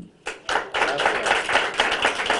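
Audience applauding: many hands clapping together, breaking out about a third of a second in and going on steadily.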